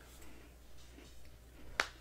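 A quiet pause with one sharp, short click near the end.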